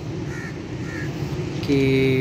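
Two short bird calls over a steady low background rumble.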